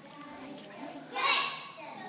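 Young children's voices, with one loud, high child's voice standing out just over a second in for about half a second.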